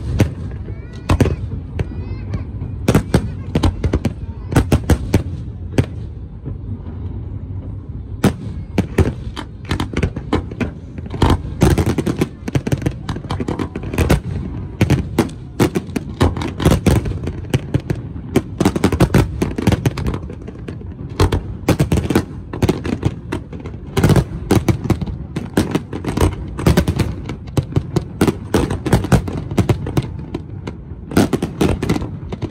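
Fireworks display: shells launching and bursting in a rapid, continuous barrage of sharp bangs over a low rumble.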